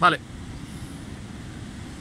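Steady low rumble of wind and sea surf on an exposed rocky shore, after a short spoken word at the start.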